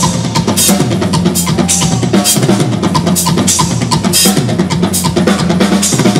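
Tama drum kit played live: a driving groove of bass drum and snare, with cymbal strokes landing at a steady pulse.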